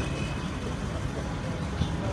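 A lull between speakers: low, steady background noise of an outdoor space, with no distinct event.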